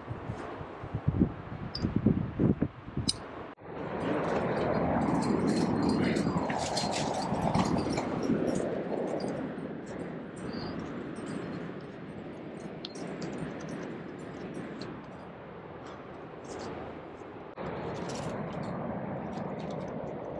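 Metal climbing gear on a harness clinking (carabiners, cams and nuts), with scuffing against the granite as the climber moves up the crack. From a few seconds in there is a steady rushing noise that is loudest near the middle and then fades.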